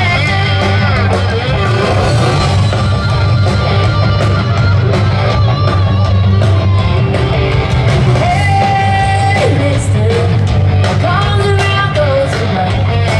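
Live rock band playing: a female lead singer over electric guitars, bass and drums, loud and steady through a big outdoor PA, recorded from the audience.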